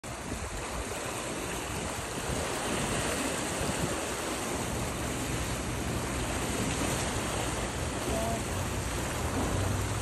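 Steady rushing noise of fast-moving, swirling harbour water, with a low rumble that grows from about halfway through.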